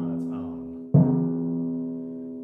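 Timpani ringing on a sustained pitched note, struck once again with a felt mallet about a second in. It is a relaxed stroke that lets the stick rebound off the head, and after the strike the note fades slowly.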